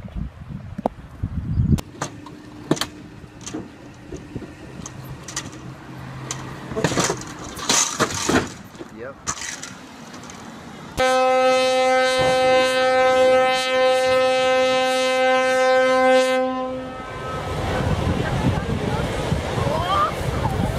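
A loud, steady horn blast lasting about five seconds, starting abruptly partway through, after a stretch of scattered knocks and clatter. It is followed by a low rushing noise.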